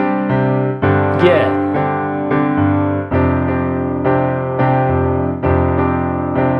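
Digital piano playing a pop chorus accompaniment in a steady rhythm. The right hand repeats the same sus2 chord shape (G–C–D–G) while the left hand plays power-chord fifths that change every couple of seconds through the C–G–F progression.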